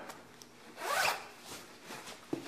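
A trouser fly zipper pulled once, a quick zip about a second in that rises in pitch.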